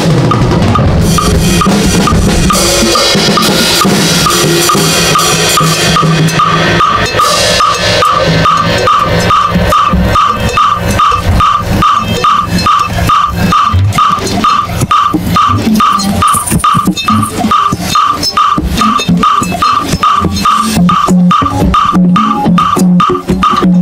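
Drum kit played fast and hard, dense kick and snare strokes under crashing cymbals, with a regular high tick keeping time.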